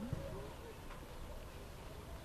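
A faint, brief human vocal sound about half a second in, then only low background noise.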